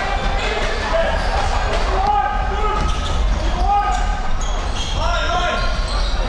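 A basketball being dribbled on an indoor court, with the steady hum of the arena and voices from the crowd and players.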